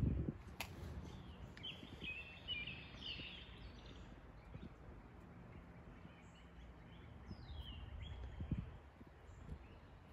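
Faint birdsong over quiet outdoor ambience: a few short chirps and falling calls, with a soft bump near the end.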